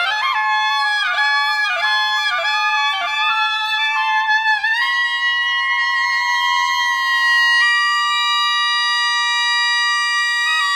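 Two clarinets playing: a quick run of short notes, then a long held note from about five seconds in, with a second held note joining it at about three quarters of the way through.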